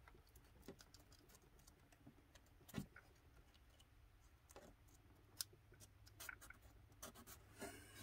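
Near silence with a few faint, scattered clicks and taps of hands handling paper and small wooden parts.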